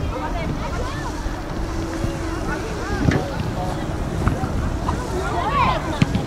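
Wind rumbling on the microphone at an outdoor football pitch, with voices calling out across the field every few seconds, one about three seconds in and another near the end.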